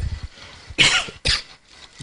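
A man coughs twice into a handheld microphone, two short sharp coughs about a second in.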